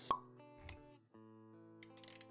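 Sound effects and music of an animated intro: a sharp pop just after the start, a short low thud about two-thirds of a second in, then held musical notes with quick clicks near the end.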